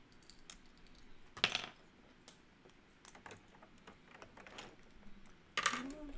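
Plastic LEGO bricks clicking and rattling as they are handled and pressed together: a quiet scatter of light clicks, with a sharper click about a second and a half in and a few louder ones near the end.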